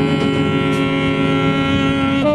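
Free-improvised jazz: a long, held wind-instrument note, steady in pitch, sounding over other sustained tones.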